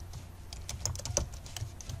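Computer keyboard typing: a quick, irregular run of keystrokes as code is entered.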